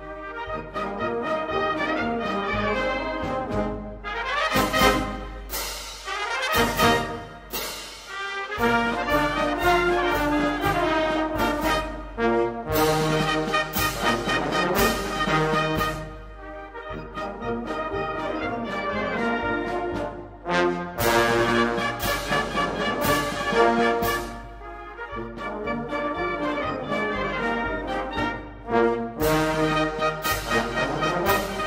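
A Maltese band-club wind band playing a lively festa march (marċ brijjuż), brass carrying the tune over a steady marching beat.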